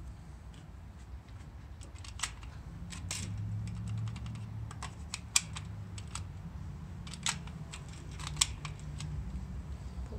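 Sharp plastic clicks from a shopping cart's coin-operated chain lock as a token is pushed into the slot and worked by hand: about five separate clicks, the loudest about halfway through, over a steady low hum.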